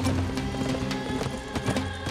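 A herd of horses galloping, a quick, continuous clatter of hooves, over background music with steady held notes.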